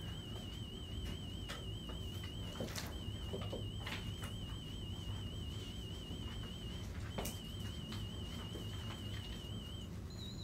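A 3,000 Hz pure test tone from an online hearing test, a steady high warbling tone with a slight wavering in pitch. It breaks off briefly about three seconds in and again about seven seconds in, with a few faint clicks.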